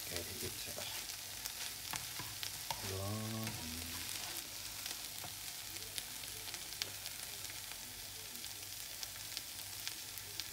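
Food frying and sizzling in a non-stick pan, stirred with a spatula, with scattered light clicks and scrapes of the spatula against the pan.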